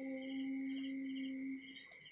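A steady low hum on one note that stops near the end, with faint quick chirps above it.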